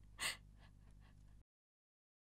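One short breathy gasp about a quarter second in, then faint room tone that cuts off to dead silence after about a second and a half.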